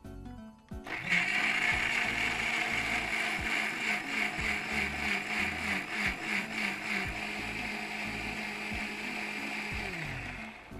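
Electric mixer grinder with a stainless-steel jar blending a cooled, cooked green-pea mixture into a purée. It starts about a second in, runs steadily, and winds down at the very end.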